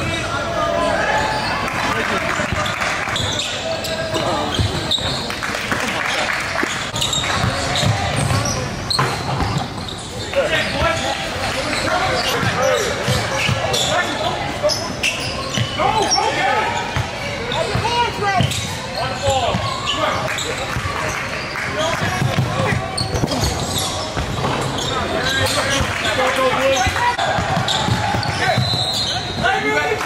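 Live basketball game sounds in a large gym: a ball bouncing on the hardwood court in repeated knocks, with players' shouts and calls mixed in, echoing in the hall.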